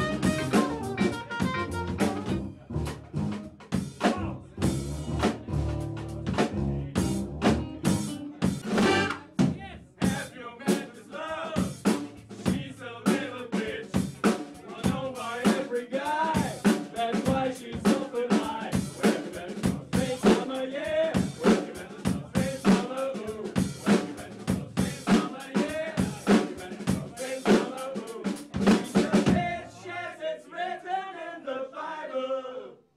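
Live jazz band playing, with the drum kit prominent: rapid snare, rimshot and bass drum hits under saxophone and brass lines. The deep bass drops away about a third of the way in, leaving drums and horns.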